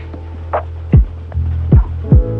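Lo-fi hip hop instrumental beat: a deep kick drum that drops in pitch hits three times, with a snare-like hit between, over a sustained bass note and held chords.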